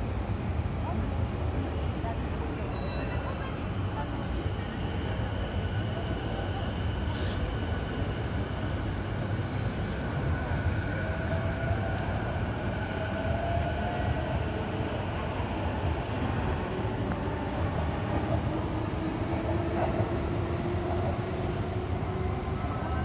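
Steady city ambience outside a railway station: a low, even rumble of trains and traffic with distant voices of passers-by. Faint drawn-out whining tones come and go in the second half.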